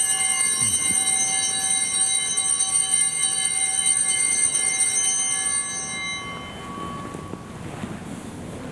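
Altar bells ringing at the elevation of the host: a bright, shimmering ring of several high bell tones held at an even level for about five and a half seconds, then dying away.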